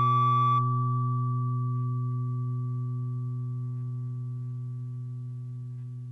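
Electric guitar note ringing out through an amplifier and fading slowly. Its higher tones drop away about half a second in, leaving a low, steady tone.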